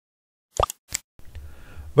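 Two short, sharp clicks about a third of a second apart, then faint steady hiss from an open microphone.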